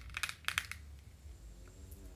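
A quick run of light clicks, about five in under a second, from a pair of plastic Chanel sunglasses being handled and slipped on.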